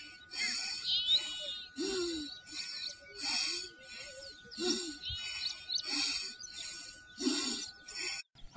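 Birds calling outdoors: a low, arching call repeated about every three seconds, with short higher chirps between. Beneath them run rhythmic high hissing pulses, about one and a half a second.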